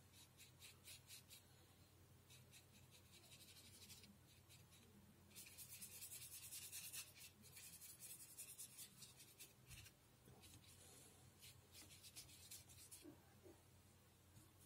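Faint quick strokes of a thin paintbrush's bristles brushing across paper, in short scratchy runs, with a denser, louder stretch of strokes about five to seven seconds in.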